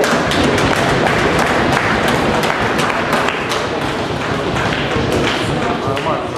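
Audience applauding: dense, steady clapping that starts at once and thins a little near the end.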